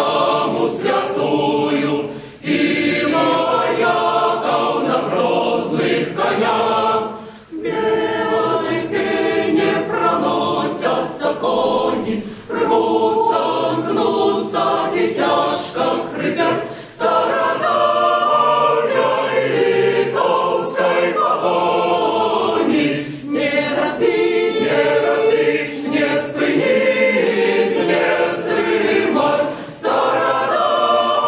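A choir singing unaccompanied, its phrases broken by short pauses every few seconds.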